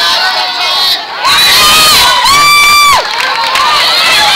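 Spectators cheering and shouting at a youth baseball game as a batted ball is put in play. A loud voice close by lets out two long, high yells about a second in, over the rest of the crowd.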